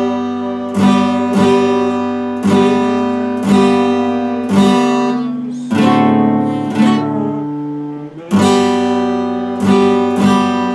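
Epiphone acoustic guitar strummed slowly: one chord stroke about every second, each left to ring and fade, with the chords changing as it goes and a brief pause near the end.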